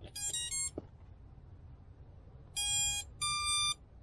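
MEPS SZ2306 brushless motors sound the power-up tones of a MEPS SZ60A 4-in-1 ESC: a quick run of short notes, then about two seconds later two longer beeps, the second higher. The tones show that the freshly wired ESC and motors have powered up without a short and are responding.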